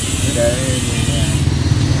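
A small engine running close by: a steady low rumble.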